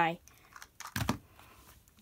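Faint clicks and a short knock about a second in, from hands handling a 2x2 puzzle cube over the stacking mat.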